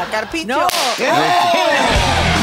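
A sudden sharp crack with a hiss trailing off for about a second, about two-thirds of a second in, over a voice crying out "no, no"; low music starts near the end.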